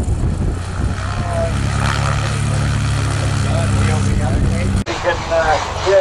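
Helio Courier's piston engine and propeller at full takeoff power, a steady drone that holds one pitch. It cuts off abruptly near the end, and voices take over.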